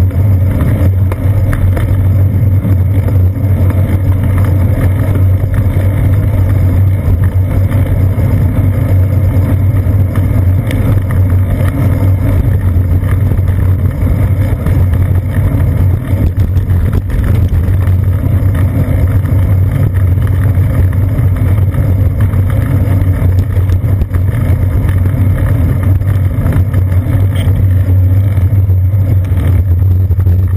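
Steady low rumble of wind buffeting and road vibration picked up by a seat-post-mounted GoPro while cycling through city traffic, with a constant low drone and no distinct events.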